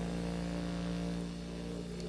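A jazz band's chord held and fading slowly, several notes ringing together at a moderate level.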